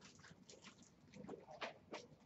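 Dry-erase marker writing on a whiteboard: a run of faint, short strokes, about five in two seconds.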